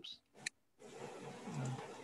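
A short click about half a second in, then soft rustling handling noise as an old auger bit is handled close to a computer microphone.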